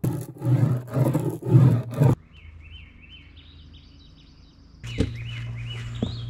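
A ribbed fiberglass bubble roller worked over wet laminate, four loud strokes in the first two seconds. Then songbirds chirping in quick repeated notes, joined about five seconds in by a steady low hum.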